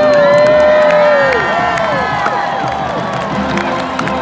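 Marching band brass holding a loud chord for over a second that bends down at the end, then a shorter note that falls off, over a cheering stadium crowd.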